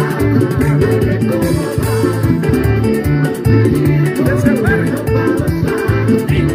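Music: a song with plucked guitar over a repeating bass line.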